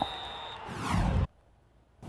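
A brief swoosh that builds and then cuts off abruptly a little over a second in, leaving near silence.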